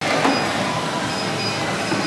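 Steady, even mechanical noise of gym treadmills and the room around them, starting abruptly, with no speech over it.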